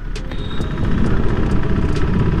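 Sport motorcycle running steadily while being ridden through city traffic, with the rumble of surrounding vehicles.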